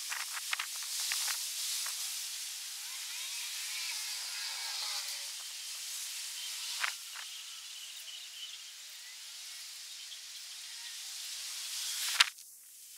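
Outdoor ambience: a steady high hiss with faint chirps in the middle and a few sharp clicks, the loudest about seven seconds in.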